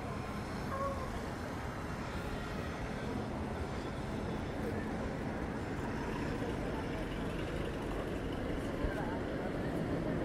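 Steady road traffic noise, with large buses driving past.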